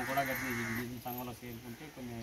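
A man's voice talking in the distance, low and indistinct, in short broken phrases.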